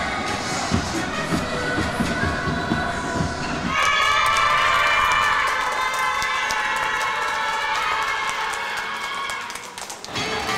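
Music with a steady beat for the first few seconds. About four seconds in, it gives way to a group of children cheering and shouting in high voices, with hand clapping, until near the end.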